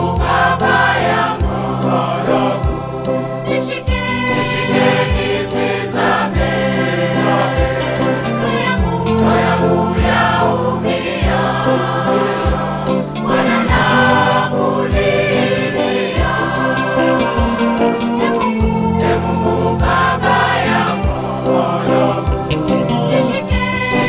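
Mixed choir singing a Swahili gospel hymn in harmony, over a backing of held bass notes that change every few seconds and regular low beats.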